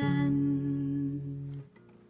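Acoustic guitar's closing chord ringing out, then muted suddenly about a second and a half in.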